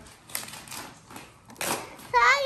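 A handful of light taps and rustles, irregularly spaced, from a hardcover picture book and paper being handled.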